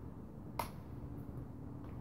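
A single sharp click about half a second in, with a fainter click near the end, over a faint steady hum.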